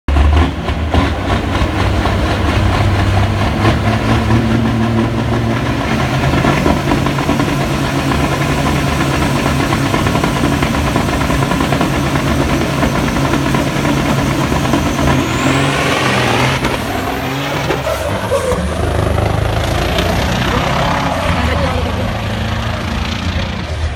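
Two diesel semi-truck tractors held at high revs side by side on a drag strip start line, a loud steady engine drone. About two thirds of the way through a high whine rises sharply as they launch and pull away down the track.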